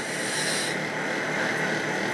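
Steady background hum and hiss, with a brief burst of brighter hiss in the first moment.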